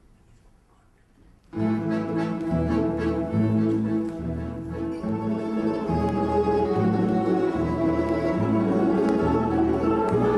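Russian folk orchestra of domras, balalaikas and bayans starting a waltz about a second and a half in, after a brief hush, with a low bass line stepping through the beats.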